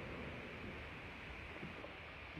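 A pickup truck moving slowly past close by: a low, steady engine rumble under even background hiss.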